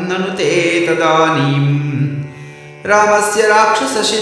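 A man's voice chanting Sanskrit verses in a melodic, sung recitation. The voice pauses for under a second past the middle and then resumes.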